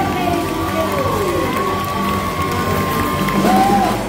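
Several voices scat singing through microphones, one holding a long steady high note while others slide up and down around it.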